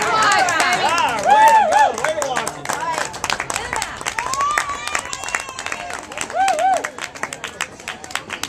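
Spectators cheering: shouts and yells loudest in the first two seconds, with steady hand-clapping running through and a few more calls later.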